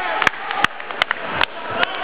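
Sharp hand claps, about two and a half a second and evenly spaced, over a low murmur of crowd voices.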